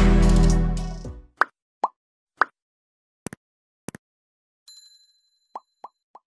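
Background music fading out over the first second, then a string of short pop sound effects and quick double clicks spaced apart in silence, with three more pops near the end: the sound effects of an animated end card with a notification bell.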